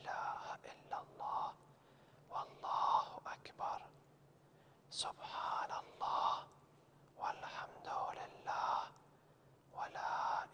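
A man whispering the Arabic tasbihat under his breath, 'Subhanallah walhamdulillah wa la ilaha illallah wallahu akbar', in quiet phrases with short pauses between, as they are recited silently in the later rak'ahs of salah.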